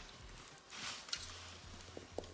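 Faint handling noises over quiet room tone: a soft rustle and a couple of light clicks, with a low steady hum coming in about halfway.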